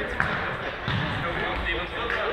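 An indoor football kicked on a sports-hall floor: a sharp thud just after the start, with a duller thump near the middle, over voices echoing in the hall.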